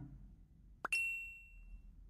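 A sharp click followed at once by a single high, bell-like ding that rings out and fades over about a second.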